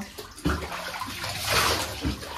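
Bathwater splashing and sloshing in a bathtub as a dog standing in it is rinsed, swelling twice, most loudly about a second and a half in.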